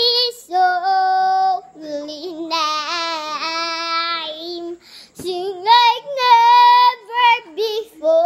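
A young girl singing unaccompanied, holding long sustained notes with short breaks between phrases.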